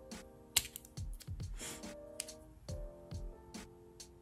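Scissors snipping the sides of a plastic press-on nail tip: a sharp snip about half a second in, then a few lighter clicks, over background music with a steady beat.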